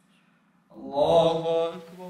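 After a short silence, a man's voice chants the takbir "Allahu akbar" in a drawn-out, melodic line, starting a little under a second in. It is the imam's call that signals the congregation to bow (ruku) in prayer.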